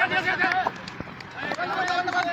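Players shouting across the field in raised voices, in two loud bursts, the second starting near the end.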